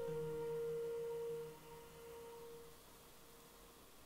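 Background music ending on one held, bell-like note that rings and fades away about a second and a half in, leaving faint hiss.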